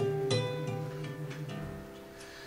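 Acoustic guitar plucking a few notes and chords, each ringing and dying away, growing quieter toward the end.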